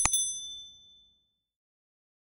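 Subscribe-animation sound effect: a mouse click on the notification bell icon followed by a single bright bell ding that rings out and fades within about a second and a half.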